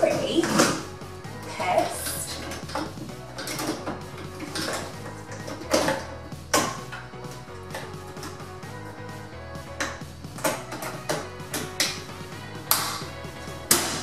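Irregular sharp clicks and knocks of a tumble dryer's plastic front panel being handled and clipped back into place, with background music under them.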